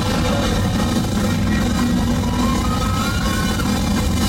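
Live ska band playing loud, with a horn section of trombone, tenor saxophone and trumpet over upright bass and drum kit. A held high note rises slightly in the second half.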